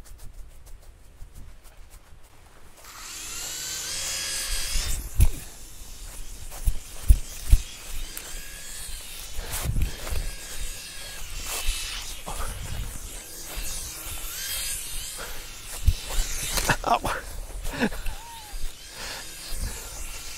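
Small electric motor and propeller of a toy flying ball whining, the pitch rising and falling as it flies, with scattered thumps and wind on the microphone.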